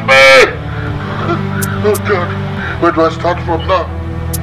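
A man wailing in grief: a loud, drawn-out cry in the first half-second, then fainter broken sobbing cries near the end.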